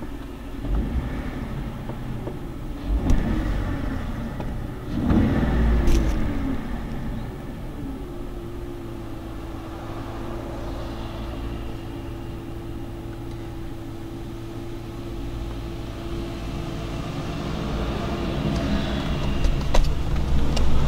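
2010 Jeep Wrangler JK's 3.8-litre V6 idling steadily on new spark plugs, running smoothly with no misfire. There are a couple of louder swells about three and five seconds in, and a steady faint whine joins from about eight seconds in.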